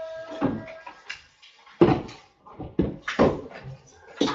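A few irregular knocks and thumps, the loudest near the middle, as things are moved about in a small room. A faint steady tone dies away about a second in.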